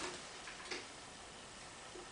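Two faint clicks, one about a second in and a smaller one near the end, with light handling noise over quiet room tone, as things are handled on a bed.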